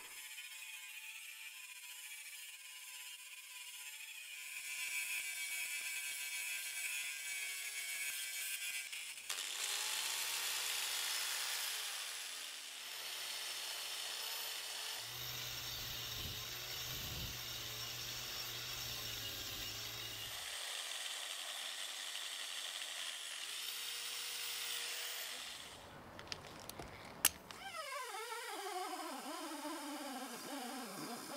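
Angle grinder grinding the cast metal parts of an old jack, in several separate passes that start and stop abruptly. Near the end there is a sharp click, then a small rotary tool with a wire wheel whose pitch falls.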